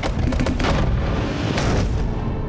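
Cartoon sound effects: three heavy booming clunks, one at the start, one about half a second in and one near the end, over a low rumbling drone, as the lights go out and the room goes dark.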